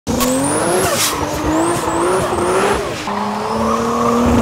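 Toyota Supra MkIV's turbocharged 2JZ-GTE straight-six held high in the revs while the car drifts, with the rear tyres squealing and skidding. The engine note drops about three seconds in.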